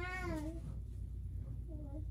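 A young child's short wordless whine: one high call that rises and falls over about half a second, then a shorter one near the end.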